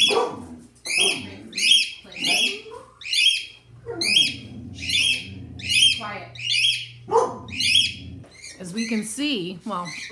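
A pet cockatiel calling over and over, one sharp, falling chirp about every three-quarters of a second, stopping near the end.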